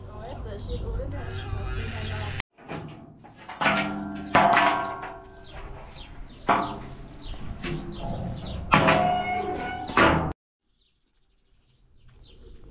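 A woman's voice briefly, then a run of loud metallic bangs and clanks, each ringing briefly, from the steel bed and side gates of a pickup truck being handled.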